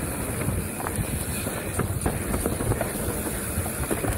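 Mountain bike descending a rough dirt trail at speed: a continuous low rumble of tyres on the ground, with frequent small knocks and rattles from the bike as it goes over bumps.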